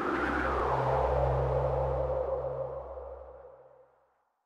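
Synthesized logo sting: a swelling whoosh that glides down in pitch over a low steady drone, then fades away near the end.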